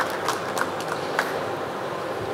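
The last scattered claps of applause dying away, a few isolated claps in the first second and a half, over the steady background noise of a busy exhibition hall.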